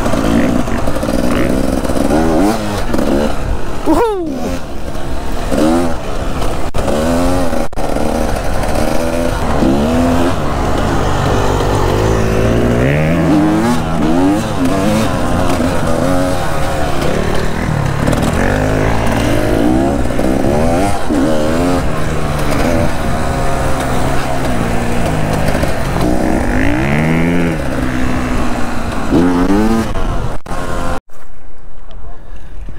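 Enduro dirt bike engine heard from on board the bike, revving up and easing off over and over, its pitch climbing and falling with the throttle.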